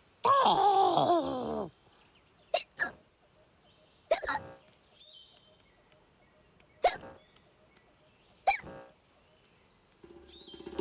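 Cartoon chameleon voice: a long wavering vocal sound, then a string of short sharp hiccups, about five, a second or two apart.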